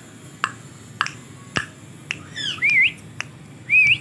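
White cockatoo giving two short wavering whistles that dip and rise, one about two seconds in and one near the end, over a run of sharp clicks about every half second.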